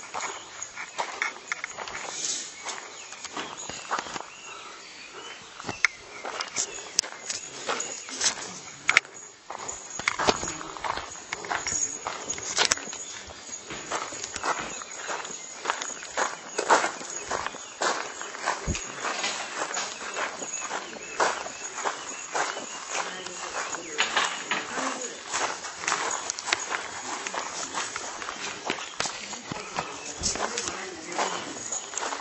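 Footsteps of people walking, many irregular short scuffs and steps, with voices talking in the background.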